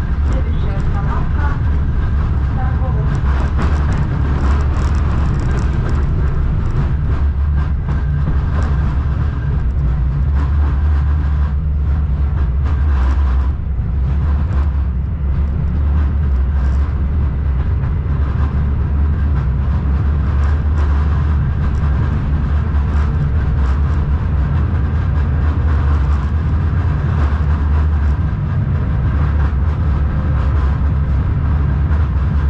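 KTM-19 (71-619KT) tram running at a steady speed, heard from inside the car: a steady low rumble of wheels on the rails and running gear, with scattered clicks.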